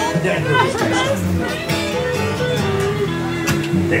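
Live country music with guitar playing, with people talking close by over it.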